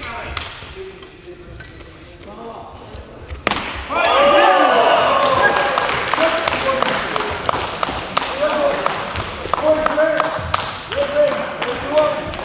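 People's voices in a large sports hall, faint at first and then loud from about three and a half seconds in, with scattered short knocks and clatter.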